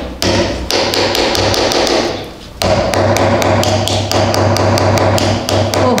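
Small plastic spoon tapping rapidly on a hard white toy surprise egg to crack it open, about five taps a second, with a brief pause about two seconds in.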